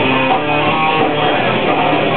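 A rock band playing live and loud: electric guitars strumming over bass guitar and drums in a steady beat.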